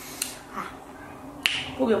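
Two sharp, short clicks about a second apart, then a woman's voice starts near the end.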